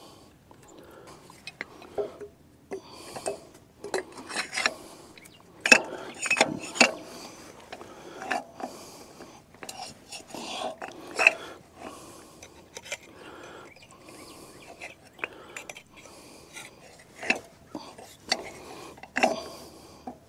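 Irregular metallic clinks, taps and scrapes of a wrench and steel parts being handled while bolting up parts of an old hay rake.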